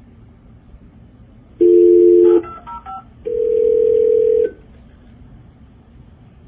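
Telephone line audio: a two-note dial tone for about a second, a quick run of keypad dialing tones, then a steady ringing tone for just over a second as the call goes through.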